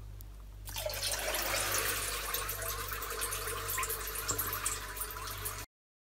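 Novec 1230 fire-suppression fluid poured into water held at 55 °C, boiling off on contact. It makes a steady fizzing hiss with many small crackles that starts about a second in and stops abruptly just before the end.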